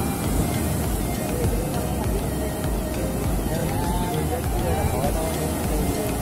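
Sea surf breaking and washing up a sandy beach, a steady rushing noise with wind buffeting the phone's microphone, and faint voices in the background.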